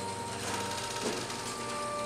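Corrugated metal roller shutter door rolling upward with a steady mechanical rattle, heard over background music with sustained notes.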